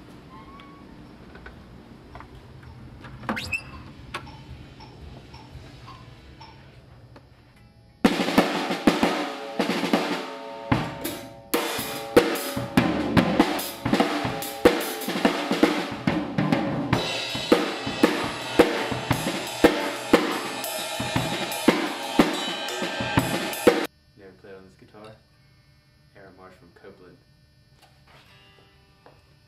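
A drum kit played hard, with snare, bass drum and cymbals in a steady driving beat. It starts suddenly about eight seconds in, after quiet room noise with a single knock, and cuts off abruptly near the end.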